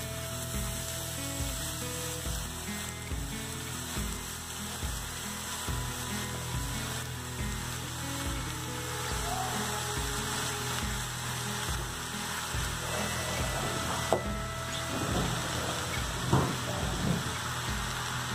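Diced vegetables and garlic sizzling softly in olive oil in a wok, under background music with a steady beat. A few light knocks come near the end.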